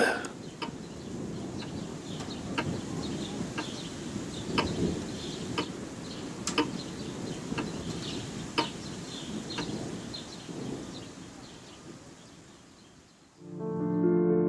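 A clock ticking steadily about once a second, with faint bird chirps, fading out; piano music begins just before the end.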